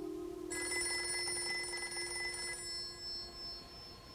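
Quiet electronic outro tones: a steady low drone, joined about half a second in by a high, fast-trembling ring that fades away after about two seconds.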